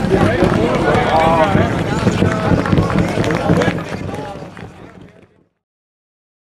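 A person talking over the engine noise of an autocross car on a dirt track. Everything fades out to silence about five seconds in.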